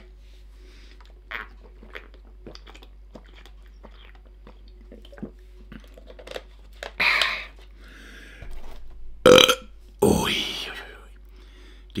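Faint clicks and crinkles of a paper milk carton's spout being opened and handled, then after drinking goat milk a man lets out a loud burp about nine seconds in, the loudest sound, followed by a longer breathy exhale.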